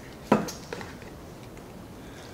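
A single sharp knock about a third of a second in, a salt canister being set down on a wooden table, followed by a few faint clicks.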